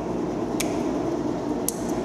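Wire cutters snipping through twisted metal wire: two sharp clicks about a second apart, over a steady air-conditioner hum.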